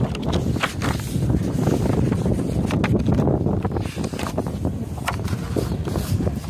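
Steady low rumble and wind buffeting the microphone while riding in a bass boat towed on its trailer along a street, with many small clicks and knocks scattered through it.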